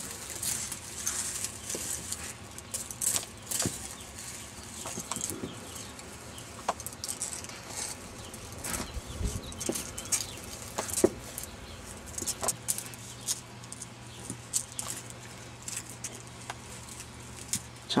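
Dry leaf litter rustling and crackling in scattered small clicks as a turtle crawls through it. A faint low hum comes in about two-thirds of the way through.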